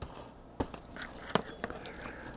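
Thin 1.7 mil plastic laminating film rustling and crinkling as it is handled and pressed onto a foam hull with a sealing iron, with a few light clicks.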